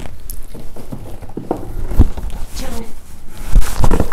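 Large cardboard shipping box being lifted and handled, with rustling and several dull thumps, the loudest about two seconds in and near the end, as the box and her hands knock against the microphone.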